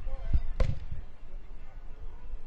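Two thumps about half a second in, a dull one then a sharper, louder knock. They sit over faint distant voices and a steady low rumble of open-air background.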